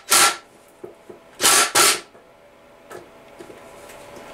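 Cordless drill-driver spinning a socket in short trigger bursts, backing off the 7/16-inch connecting-rod cap nuts on a Kohler KT17 crankshaft. There is one brief whir at the start, then two more close together about a second and a half in.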